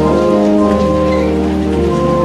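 Pipe organ playing sustained chords, the chord changing a few times.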